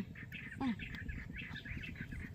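Small birds chirping repeatedly in the background, in many short, high calls.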